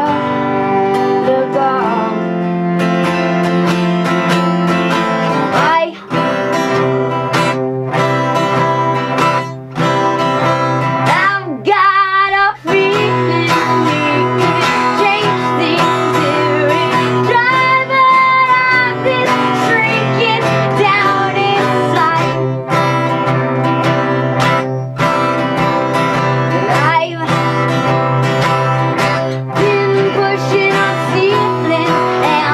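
Acoustic guitar strummed together with a bowed cello playing long held low notes and a melody above.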